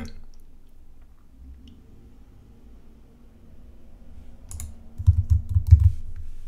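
Computer keyboard and mouse clicks: after about four quiet seconds, a single click, then a quick cluster of key taps with low knocks near the end, as text is selected and copied.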